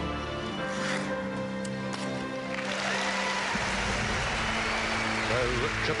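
Orchestral film-score music plays over the arena speakers, and about two and a half seconds in the crowd breaks into applause for a landed flip.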